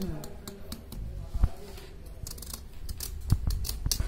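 Small carving knife cutting into raw pumpkin, a scattered series of sharp clicks and snicks as the blade works the flesh and rind, with a few low knocks in between.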